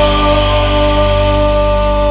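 Rock band music holding one sustained chord that rings steadily without change, with a high wash of cymbals over it.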